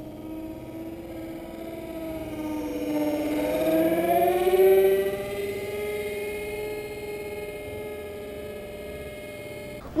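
Electric motors of a foam RC A-10 Warthog model, with twin 64 mm ducted fans and two added propeller motors, whining in flight. The steady whine rises in pitch and grows loudest about halfway through, then eases off as the plane moves away.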